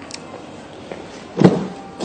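A Mercedes-Benz W203 C-Class rear door unlatching and opening about a second and a half in: one short, loud clunk that quickly fades.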